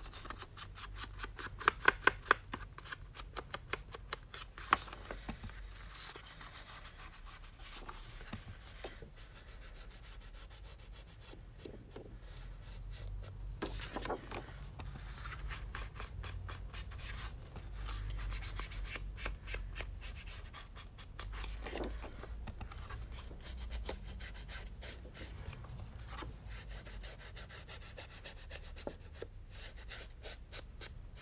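Round ink blending tool rubbed over paper edges in quick, short, scratchy strokes, inking the edges of patterned cardstock. A few sharp taps stand out in the first few seconds.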